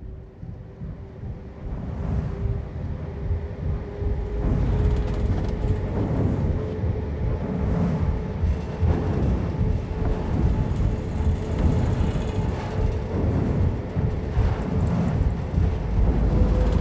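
Film score drone: a deep rumble under one held tone that slowly creeps upward in pitch, swelling in loudness over the first few seconds and then holding steady.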